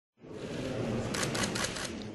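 Press photographers' camera shutters firing in a quick run of about five clicks, starting about a second in, over steady room noise.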